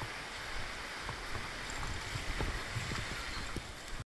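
Surf washing up a sandy beach: a steady hiss of water, with uneven low rumbles of wind on the microphone.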